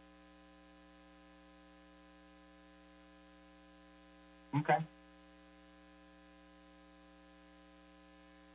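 Faint, steady electrical mains hum in the audio feed: a low buzz with a ladder of even overtones that holds unchanged through a pause in the talk.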